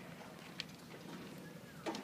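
A lull in a school auditorium: faint room noise with light shuffling and a single soft click about half a second in.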